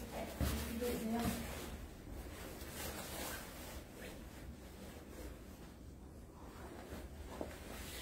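A word spoken near the start, then faint rustling and handling noise over a low steady hiss, fading quieter toward the middle.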